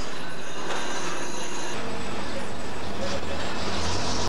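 Street noise with a motor vehicle engine running, its low rumble coming in about halfway through and growing louder toward the end.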